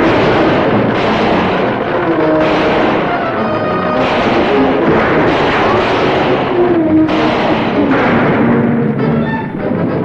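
Orchestral chase music with heavy timpani, mixed with the dense clatter of a galloping horse team and a stagecoach.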